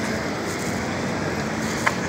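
Steady outdoor street background noise with no distinct events, with a single faint click near the end.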